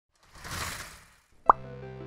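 Logo-intro sound effects: a short airy whoosh, then a sharp, loud pop about a second and a half in, after which music with long held tones begins.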